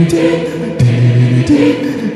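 Vocal music: layered, choir-like singing on low held notes that step to a new pitch a few times, with a sharp percussive click at each change.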